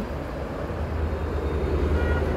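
Steady low rumble of a nearby motor vehicle or road traffic, with no distinct events.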